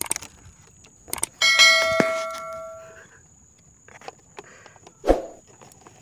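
Edited-in subscribe-button sound effect: a couple of clicks about a second in, then a bell ding that rings and fades out over about a second and a half. A few light knocks and a thump come later.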